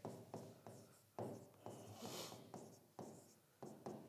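Pen strokes on a writing board as a line of an equation is written: a series of faint, short scratches and taps, with one longer stroke about two seconds in.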